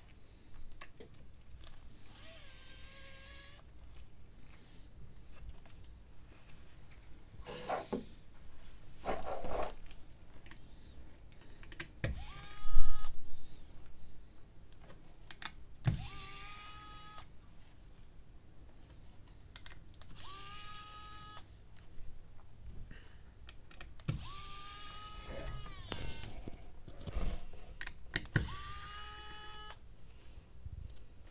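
Electric precision screwdriver whirring in short runs of about a second, five or so times. Each run rises quickly in pitch and then holds steady as it drives out the small screws of a smartphone's internal cover. Light clicks of tweezers and tools on the phone come between the runs.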